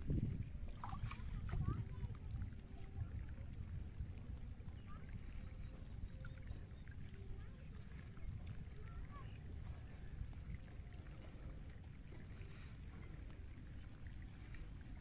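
Hands pulling water plants and working in the water beside a wooden boat: faint rustling, small splashes and light knocks over a steady low rumble, busiest in the first two seconds.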